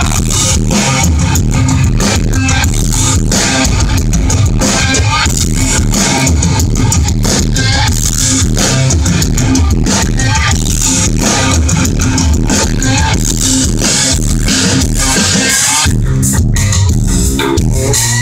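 Nu-metal band playing live at concert volume: heavily distorted seven-string guitars, bass guitar and drums pounding out an instrumental riff, heard from within the crowd. Near the end the high guitar and cymbal sound drops away for a moment while the bass and drums carry on.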